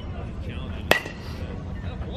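A baseball hit by a metal bat about a second in: one sharp ping with a short ringing tone after it.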